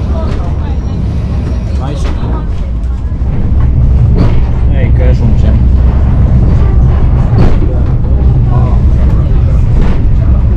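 Malaxa diesel railcar heard from inside the carriage, its engine and running gear making a loud steady drone that grows louder about three and a half seconds in. Indistinct voices mix in.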